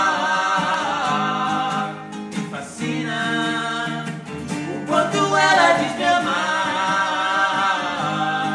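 Two male voices singing together in long held phrases with vibrato, accompanied by acoustic guitar, with short breaks between phrases about two seconds in and again around four and a half seconds in.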